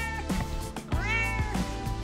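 Domestic cat meowing: the tail of one meow at the start, then one long meow about a second in that rises and then falls in pitch, over background music.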